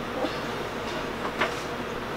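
Steady background hiss of the room, with two faint, brief rustles of handling as items are moved.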